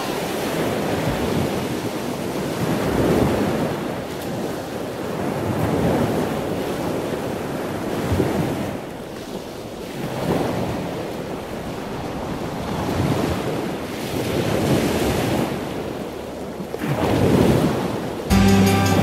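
Ocean surf: waves breaking and washing up the beach, swelling and fading every three to four seconds, with wind on the microphone.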